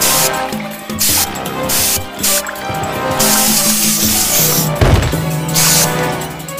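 Cartoon background music with several short hissing spray sound effects of a cartoon skunk spraying, the longest lasting over a second about three seconds in, and a low thud near the end.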